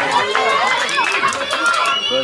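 Several raised voices shouting over one another during football play, high-pitched and overlapping throughout.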